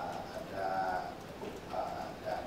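A man's voice making soft, drawn-out hesitation sounds, a few brief 'uh'/'mm' fillers at a steady pitch, as he pauses mid-sentence.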